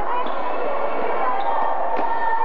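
Basketball being dribbled on a hardwood gym floor during a game, with voices in the echoing hall.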